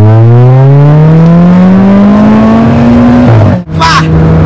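Stage 2+ tuned Volkswagen Polo GT TSI's turbocharged petrol engine accelerating hard from a launch, heard from inside the cabin. The engine note rises steadily in pitch for over three seconds, then drops sharply as the gearbox shifts up.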